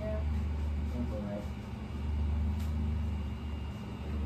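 Underwater treadmill machinery running with a steady low hum, with faint snatches of voices over it.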